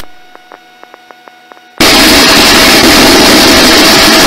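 Helicopter rotor, engine and wind noise heard through a crew member's voice-activated intercom headset mic. It cuts off sharply at the start, leaving low hum and faint rapid clicks, then comes back loud and abrupt a little under two seconds in as the mic opens again.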